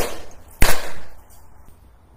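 Two sharp hand claps about two-thirds of a second apart, each trailing off in a short room echo.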